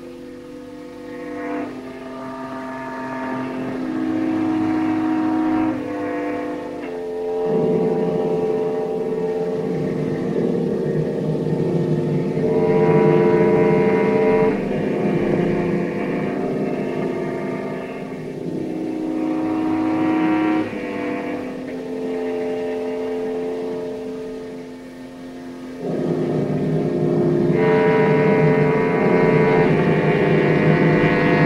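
Orchestral film music: slow, held chords and a melody over a sustained lower note, growing fuller about eight seconds in and swelling again near the end.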